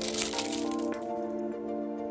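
Crinkling of a twist-wrapped hard candy's plastic wrapper as it is unwrapped, dense at first and thinning out about a second in, over light background music.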